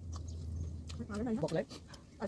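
Small clicks of eating from steel plates, with a short vocal sound of wavering pitch in the second half.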